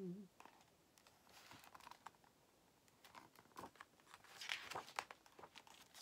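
Faint rustling and crinkling of paper picture-book pages being handled and turned, with a few soft clicks and the most rustle about two-thirds of the way through. A held, wavering hummed note ends right at the start.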